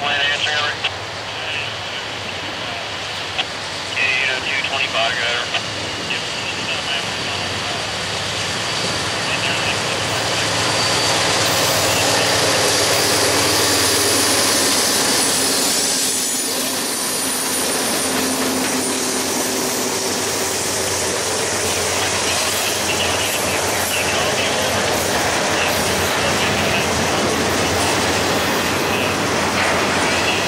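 A Norfolk Southern GE C40-9W diesel locomotive approaches with its engine running, growing louder from about eight seconds in and loudest as it passes a few seconds later. After it comes the steady rumble and clatter of double-stack intermodal well cars rolling past on the rails.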